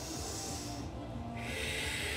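A woman's deep breathing close to the microphone: a soft breath near the start, then a longer, louder exhale about a second and a half in, over faint background music.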